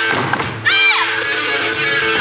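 Eisa drumming: paranku hand drums and a barrel drum struck in time with loud recorded music. A pitched phrase in the music rises and falls about halfway through.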